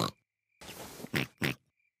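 Cartoon pig character snorting: a breathy snort about half a second in, followed by two short sharp snorts.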